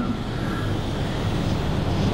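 Steady, even background hiss of room noise picked up through a microphone, with no voice.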